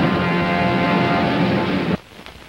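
Orchestra holding the final chord of the closing logo music, which cuts off abruptly near the end. Only the faint hiss and crackle of an old film soundtrack is left.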